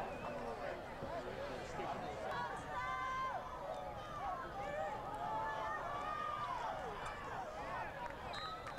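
Football stadium crowd: many voices shouting and cheering over one another from the stands, with one loud held yell about three seconds in.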